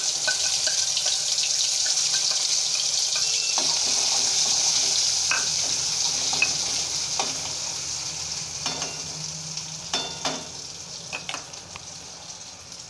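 Wet ground masala paste sizzling in hot oil in a steel kadhai as it is poured in and stirred with a steel spoon. The hiss fades over the second half, with a few scrapes and clicks of the spoon against the pan near the end.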